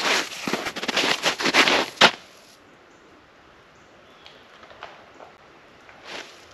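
Crunching footsteps in snow during a disc golf run-up and throw, lasting about two seconds and ending in one sharp, louder crunch at the release. After that only a faint outdoor background with a few light ticks remains.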